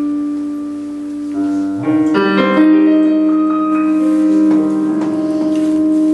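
Solo piano playing the opening of a traditional Sicilian love song. A held chord fades for about a second and a half, then fuller chords and a melody line come in and carry on steadily.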